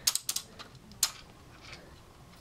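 Lego stud shooters on a toy gunship being fired: a quick run of sharp plastic clicks, then one more click about a second in, as small round studs are flicked out.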